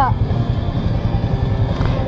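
Yamaha Sniper 155's single-cylinder engine idling with a steady low throb while the motorcycle stands still.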